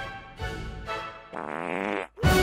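Fart noises over music: two shorter ones, then a longer buzzing one in the second half that stops abruptly at the end.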